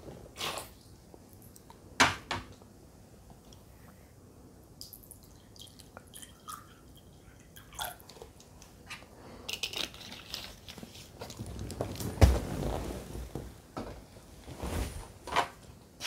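Plastic water bottle's sealed screw cap being twisted open: a few separate clicks at first, then a dense run of small plastic crackles and snaps from the tamper-evident seal ring and the squeezed bottle, loudest about three quarters of the way through.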